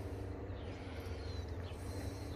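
Quiet outdoor background: a steady low hum with a few faint, short bird-like chirps about half a second in. The dog's rolling on the dirt makes no clear sound.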